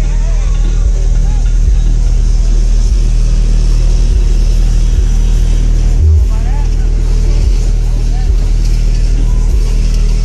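Car stereo playing bass-heavy music at high volume through four square subwoofers in the trunk. Deep, held bass notes dominate and change pitch about six seconds in, with fainter vocals above.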